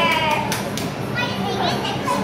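Children's voices in a crowd: one child's high, drawn-out call slides down and trails off just after the start, followed by short bits of chatter and calling.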